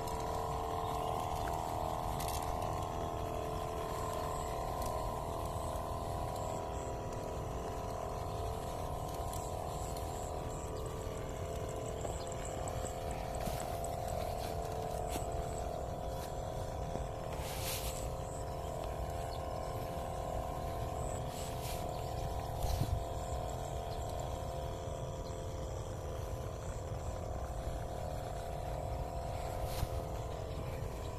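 Battery-powered knapsack sprayer's electric pump running with a steady hum while spraying insecticide on watermelon plants, over a low rumble, with a few brief clicks.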